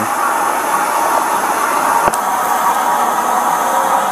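Steady hiss of background noise, with a single sharp click a little past halfway.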